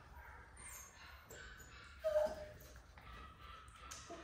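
A mini poodle puppy giving one short whimper about two seconds in, with a few faint whines around it.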